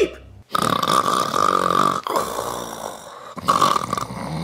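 A person's exaggerated, comedic snoring: two long, rasping snores, with a third starting near the end.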